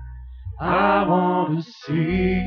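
A man's voice, drawn out and chant-like, over a low sustained musical note that fades out about a second and a half in; a hissed 's' follows near the end.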